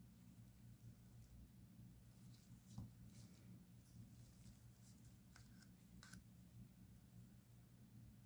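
Near silence with a faint low hum. In the middle comes a scatter of faint light clicks and scrapes as a plastic mixing cup with a wooden stir stick is handled and lifted away.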